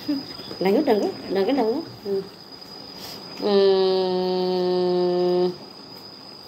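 A woman's voice holding one steady hummed note for about two seconds, after about a second of short voice sounds.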